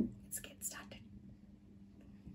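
A soft low thump, then a person's quiet whisper with two short hissing sounds under a second in.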